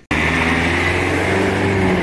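Steady outdoor background noise with the low, even hum of a motor vehicle engine running at idle.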